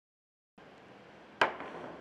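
Pool cue striking the cue ball for a jump shot: one sharp crack about 1.4 seconds in, fading quickly, over quiet hall ambience that follows a moment of dead silence.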